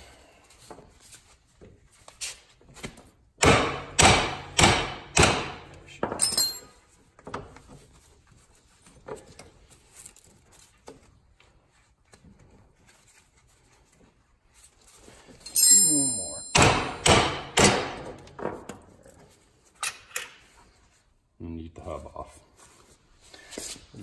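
Hammer blows on the front hub and steering knuckle of a Yamaha Grizzly 660 ATV, knocking the seized parts loose: a run of four hard strikes about half a second apart, then after a long pause another run of four or five.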